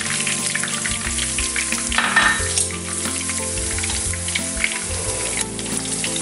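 Whole garlic cloves and bay leaves frying in olive oil in a frying pan, a steady sizzle, with a utensil stirring them through the hot oil.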